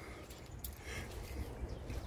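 Faint background noise with a steady low rumble and a couple of faint clicks, with no clear source.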